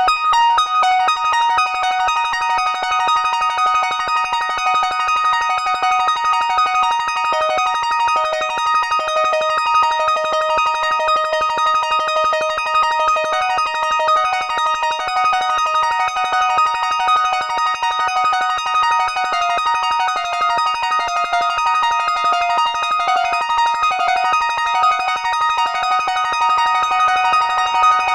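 Synthesizer arpeggio played from a keyboard through a Moon Modular 530 stereo digital delay set to digital ping-pong mode: a steady, repeating run of short notes stepping up and down, with the echoes piling up into a dense wash of tones.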